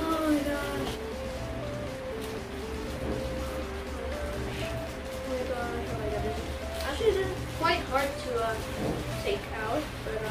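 Background music with a stepping melody of held notes, under a faint crinkling of plastic wrapping being torn open.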